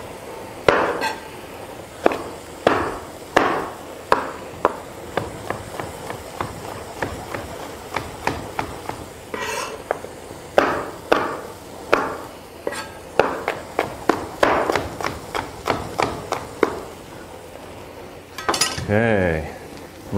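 Chef's knife chopping a green bell pepper on a plastic cutting board: a run of irregular knocks as the blade strikes the board, about one to two a second.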